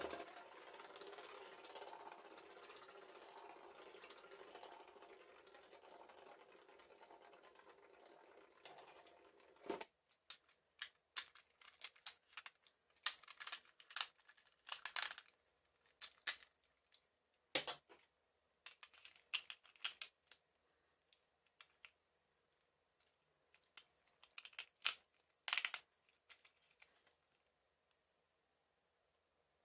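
A Beyblade Burst top spinning on a plastic stadium floor: a faint steady whir that slowly dies away over about ten seconds and ends with a click. Afterwards come scattered clicks and knocks of plastic Beyblade parts being handled.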